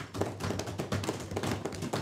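Many hands thumping on wooden parliamentary desks, a dense irregular patter of knocks: the desk-thumping that members use in place of applause to show approval of a point.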